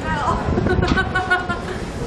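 Indistinct voices of people talking, over a gusty low rumble of wind on the microphone.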